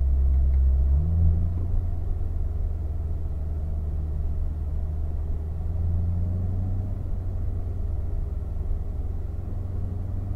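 C7 Corvette's V8 engine heard from inside the cabin, running at low revs, about 1,000 rpm, while the car rolls along at walking-to-jogging pace. Its low hum steps up in pitch about a second in as it shifts down a gear, and rises slightly again around six seconds.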